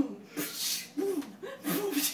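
A person's breathy gasps and short stifled laughs in quick bursts, with a loud sharp intake of breath about half a second in.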